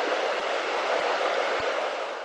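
Steady rush of a river flowing over a weir and stones, with a few faint low bumps.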